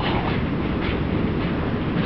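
Steady rushing roar of a waterfall carried down a tunnel, a dense even noise with no break.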